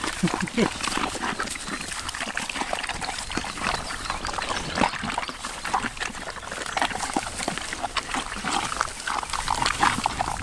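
Red wattle pigs eating watermelon: a dense, irregular run of wet crunching and smacking as they chew the rind and flesh.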